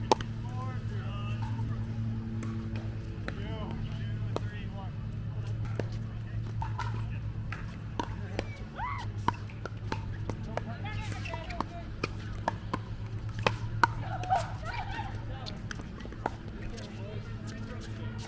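Pickleball paddles striking a hard plastic ball: sharp pops come at uneven intervals, the loudest a little past the middle, over faint voices and a steady low hum.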